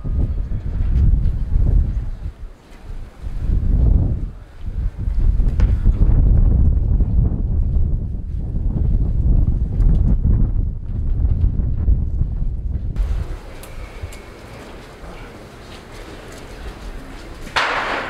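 Wind buffeting the camera microphone, a gusting low rumble that drowns most other sound, dies down about two-thirds of the way in and leaves quieter outdoor background.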